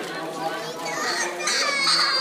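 Children's voices and calls mixed with adult speech around a swimming pool, growing louder in the second half with high-pitched children's voices.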